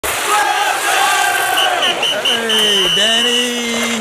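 Beatless intro of a dancehall track: shouting voices with a crowd-like sound, then four short high electronic beeps followed by one long beep over a held, falling tone.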